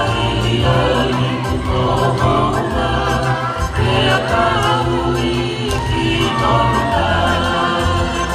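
A choir of voices singing a song together over a low, pulsing bass: the music for a Tongan fakame'ite dance.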